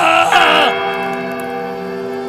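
Music from a Rajasthani song: a voice holds a long, wavering sung note that breaks off under a second in, leaving steady sustained accompaniment tones.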